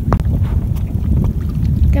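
Small waves lapping against the rocks of a seawall, under a steady low rumble of wind on the microphone.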